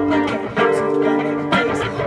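Acoustic guitar strumming chords, with fresh strums at the start, about half a second in and about a second and a half in.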